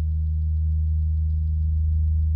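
A low, steady drone tone held on one pitch without change.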